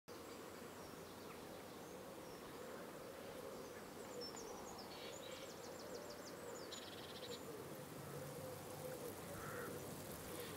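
Faint pond-side ambience: a steady, slightly wavering insect buzz throughout, with a few quick bird chirps and a short trill around the middle.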